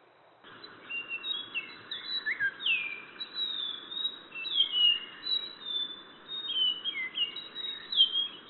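Several wild birds chirping and whistling at daybreak in a dense, overlapping chorus of short, mostly falling notes, starting about half a second in over a steady hiss.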